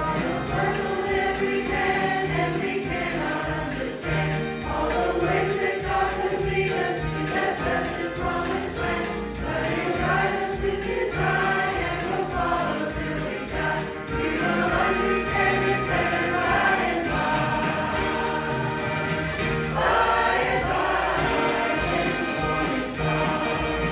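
Mixed choir of men's and women's voices singing a hymn over a steady low accompaniment.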